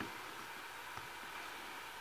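Steady low hiss with a couple of faint plastic ticks, near the start and about a second in, from fingers pressing a laptop optical-drive bezel onto an aluminium HDD caddy.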